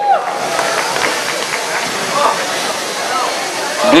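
Steady hiss of background noise filling a gym during a robotics match, with faint distant voices now and then.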